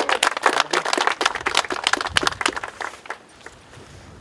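A small group of people applauding, the clapping thinning out and dying away about three seconds in.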